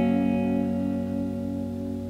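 G-flat major chord on a Les Paul-style electric guitar, played as a triad with the thumb fretting the bass note, ringing out and slowly fading.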